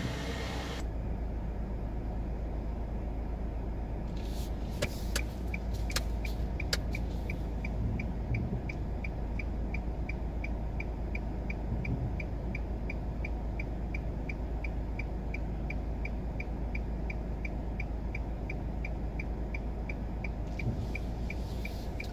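Car engine idling with a steady low rumble inside the cabin, while the turn signal ticks evenly, about two to three clicks a second, from about four seconds in until near the end: signalling to pull out from the curb into traffic. A few sharper clicks come about five to seven seconds in.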